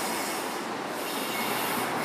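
Rowing machine's air flywheel and chain running under steady strokes: a continuous whoosh that swells and eases about once a second with the drive and recovery.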